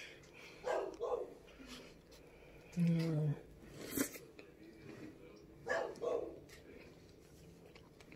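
A woman laughing briefly a few times while eating, with one short voiced sound near the middle. A single sharp click about four seconds in, as a metal fork meets the mouth or plate.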